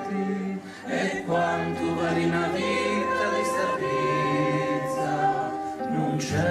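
Mixed choir singing long held chords, the harmony moving to a new chord about a second in and again near the four-second mark, with a brief dip in the sound just before the first change.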